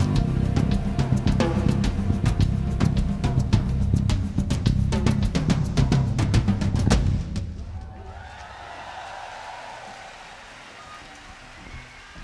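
A live rock band's closing crescendo, with rapid drum-kit strikes over the full band, stops abruptly about seven seconds in. A much fainter crowd noise follows as the sound dies away.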